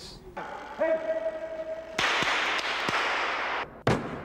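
Film soundtrack: a held musical tone for about a second and a half, then a rush of noise that cuts off suddenly, with a short burst just before the end.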